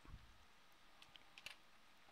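Near silence: room tone with a few faint computer keyboard clicks.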